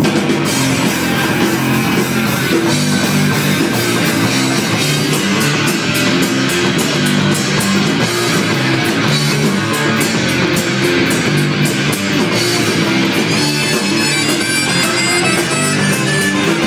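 Live rock band playing loudly and steadily, with guitar and drum kit.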